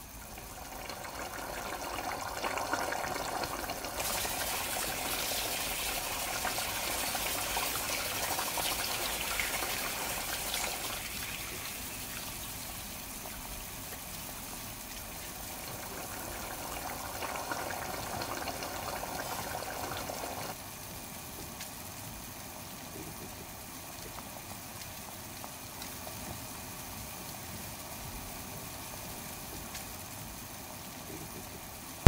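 Large aluminium stockpot of pork ribs and backbones boiling hard, the foamy broth bubbling and churning. A brighter hissing stretch runs through the first third. The sound drops abruptly about two-thirds of the way through.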